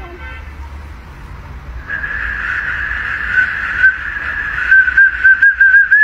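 Small metal whistle sounding one steady high tone as a German Shepherd blows it, starting about two seconds in, then wavering and breaking into quick pulses near the end.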